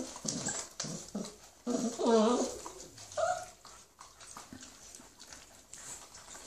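Five-week-old hound puppies crowding over a bone, giving short whimpering cries as they jostle; the loudest cry comes about two seconds in. Scattered clicks of chewing and scuffling run underneath and carry on more quietly after the cries stop.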